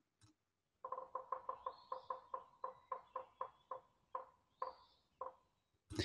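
Woodpecker pecking on a tree, played back very quiet: a run of light taps, a few a second, starting about a second in and thinning out toward the end.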